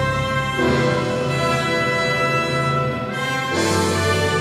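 Symphony orchestra playing film-score music in sustained chords, which change about half a second in and again near the end.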